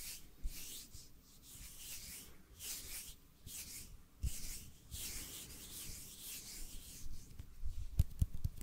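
Two palms rubbing together close to a microphone: a run of soft hissing strokes, about two a second, with a few faint thumps.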